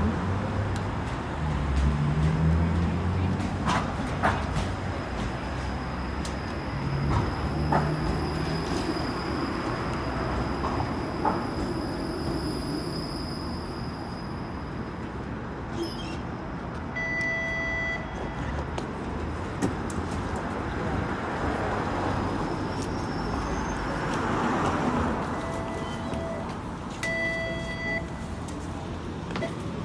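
TTC Flexity low-floor streetcar pulling into the stop, its low rumble and a thin high whine over street traffic. Short electronic door-chime beeps sound about two-thirds of the way in and again near the end as the doors work.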